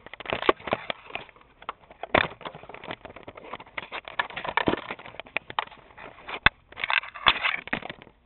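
Camera handling noise: dense, irregular knocking, scraping and crackling of hands and objects rubbing close against the microphone. It stops abruptly at the end as the camera comes to rest.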